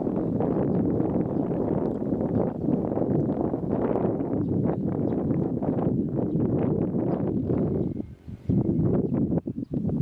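Wind buffeting the camera microphone: a steady, gusting low rumble that drops away briefly twice near the end.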